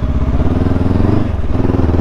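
Honda CB500X's 471 cc parallel-twin engine accelerating from a standstill. Its pitch climbs, drops as it shifts up about a second and a half in, then climbs again.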